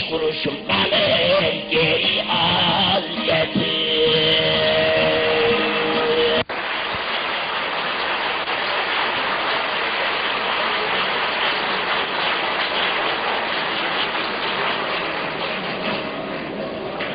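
Bağlama (saz) playing while a man sings, ending on a held note. About six seconds in the sound cuts abruptly to a steady, even clatter of audience applause.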